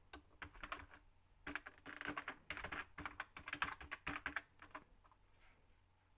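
Faint typing on an HP laptop keyboard: several quick runs of key clicks, dying away about four and a half seconds in.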